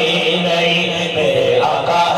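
A man singing a Punjabi naat into a microphone, drawing out long notes that bend in pitch, with a short dip about a second and a half in.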